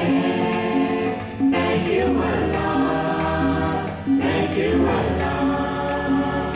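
A choir singing a devotional song in unison with instrumental accompaniment, the voices sliding and wavering on held notes.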